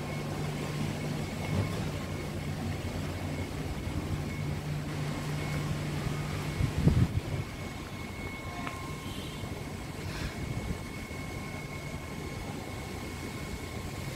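Steady low machine hum, consistent with an air-conditioner's outdoor unit, that stops about halfway through. A brief louder rumble comes at about the same point.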